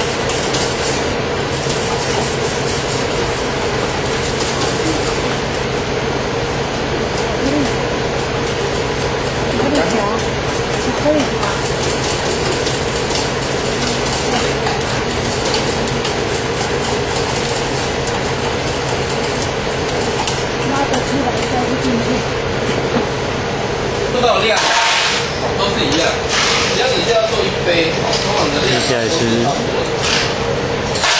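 A steady mechanical hum with a constant mid-pitched tone, with faint voices underneath. About 24 seconds in it grows louder, with a run of clattering knocks.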